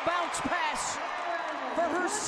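Women's basketball game broadcast audio: voices over the arena, with a couple of sharp thumps of a basketball on the hardwood court in the first half second.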